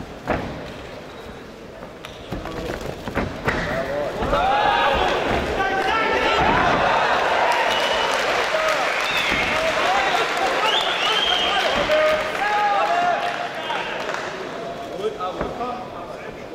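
Arena crowd shouting and cheering, many voices at once, swelling about four seconds in as the fighters go to the ground and easing off near the end. A single sharp thump comes just after the start.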